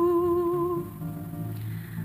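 A woman singing the responsorial psalm, holding one long note that ends about a second in. A soft, low instrumental accompaniment then carries on alone.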